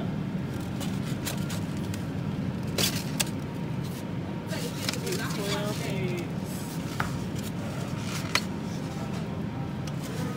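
Steady low hum of a supermarket refrigerated display case, with a handful of sharp clicks and taps from egg cartons being picked up and handled. Faint voices come in briefly about halfway through.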